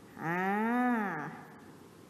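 A woman's single drawn-out vocal hum or vowel, about a second long, its pitch rising and then falling, without words.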